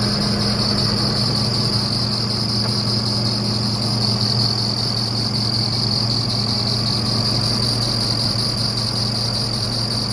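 Diesel engine of a Tigercat wheeled skidder running at a steady speed, heard up close at its open engine bay, with a steady high whine over the engine note.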